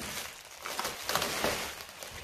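Clear plastic wrapping crinkling and rustling as hands handle a plastic-wrapped air fryer, with irregular small crackles.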